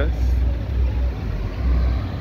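Passing road traffic: cars and a pickup truck driving by close at hand, heard as a steady low rumble of engines and tyres.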